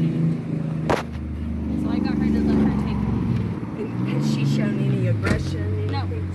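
A motor vehicle engine running, its pitch rising about two seconds in and swelling up and back down again a little before the end, with a sharp click about a second in and another near the end.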